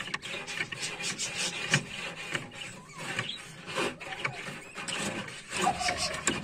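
A stiff wire being poked into a wooden nest box, scraping and rubbing against the boards in irregular strokes.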